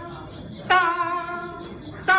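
A performer's voice imitating the struck ring of a temple qing bowl-bell, a single held 'dang' tone. It starts sharply about 0.7 s in and fades slowly. The tail of the previous such tone fades out at the start, as a stand-in for the bell rung between kowtows.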